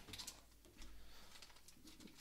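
Near silence, with faint soft rustles and ticks of trading cards and a foil pack being handled.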